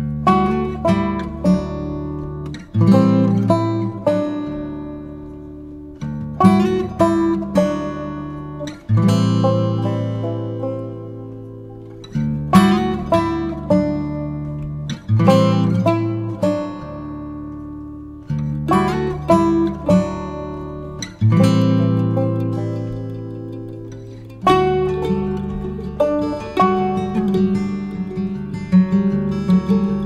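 Acoustic guitar music: a chord struck about every three seconds and left to ring down, with plucked notes between.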